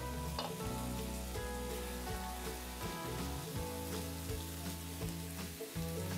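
Raw beef-and-pork burger patties sizzling steadily in a hot frying pan, under background music.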